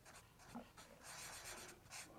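Faint scratching of a felt-tip marker drawing strokes on paper, from about halfway in.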